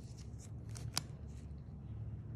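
Small crisp ticks and scratchy rustles from gloved fingers working on skin, with one sharper click about a second in, over a low steady hum.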